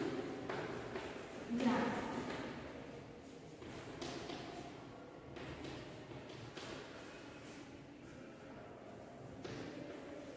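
Chalk writing on a blackboard: faint, scattered strokes and taps of the chalk against the board. A brief voice is heard about two seconds in.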